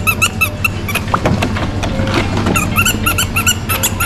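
Shopping cart squeaking as it is pushed: runs of short, rapid, high squeaks, one at the start and a longer one from just past the middle to near the end.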